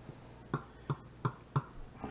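Spatula knocking against a glass measuring cup while stirring baking soda into yogurt: four light knocks about a third of a second apart.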